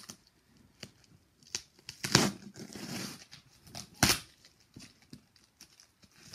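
Hands handling and opening a cardboard shipping box: scattered taps and scrapes on the cardboard, with two loud, sharp tearing rasps about two and four seconds in, the first drawn out for about a second.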